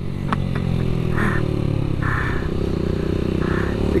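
Motorcycle engine running as the rider slows in traffic, under a haze of wind and road noise, with three short bursts of hiss.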